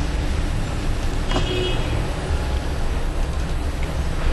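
Steady low background rumble, with one brief higher-pitched sound a little over a second in.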